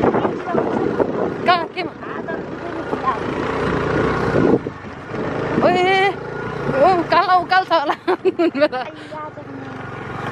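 A vehicle's engine running, with wind buffeting the microphone, as it climbs a hill road. About halfway through, people break into laughter and short exclamations.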